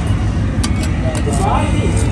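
Faint voices over a steady low rumble, with a few short sharp clicks.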